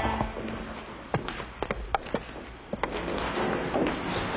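Film soundtrack: guitar music dies away at the start, leaving a quiet background broken by several irregular sharp taps and knocks.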